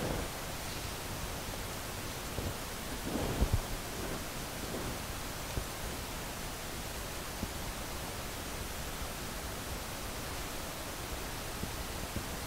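Steady hiss of room noise, with a few soft knocks about three seconds in as a plastic paint cup is picked up and handled.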